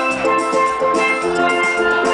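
A steel band playing: steel pans ringing out bright pitched notes and chords over a steady drum beat.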